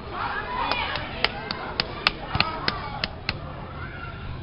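A quick run of about ten sharp smacks, three to four a second, starting under a second in and stopping a little before the end, with voices near the start.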